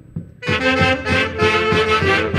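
A live Andean folk band with saxophones and a bass drum comes in loudly about half a second in, after a few soft drum taps, playing another round of the tune with sustained reed melody over a steady drum beat.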